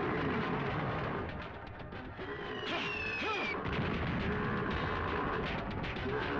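Film battle soundtrack: dramatic music mixed with gunfire and artillery explosions, with a high falling tone about three seconds in.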